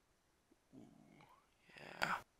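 Faint, low grunt of effort from a man, then a rustle of plastic shrink wrap rising near the end as scissors are worked into it.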